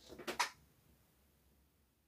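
Two brief soft rustles as the cat is pressed against the microphone, then near silence; no purring comes through.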